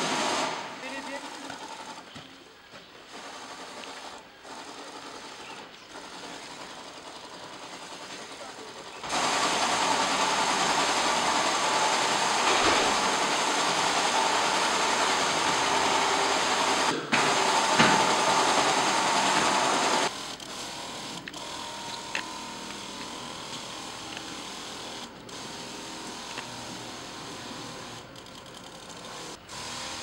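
Backpack sprayer spraying disinfectant: a steady hiss that comes in abruptly about nine seconds in and cuts off just as suddenly about twenty seconds in, with quieter sounds either side.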